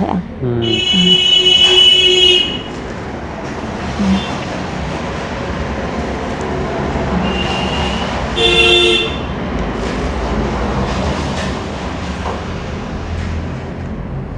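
Vehicle horns tooting over steady street traffic noise: one horn held about two seconds near the start, and a shorter toot a little past halfway.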